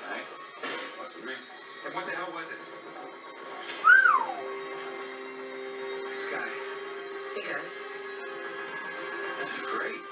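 Television episode soundtrack playing in the room: a music score with sustained held notes under faint dialogue. About four seconds in comes a brief high squeal that rises and then falls in pitch, the loudest sound.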